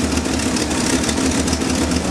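The engine of a 1977 Chevrolet pickup idling steadily, firing on all cylinders. The engine has an exhaust leak, which the owner puts down to a missing emission valve.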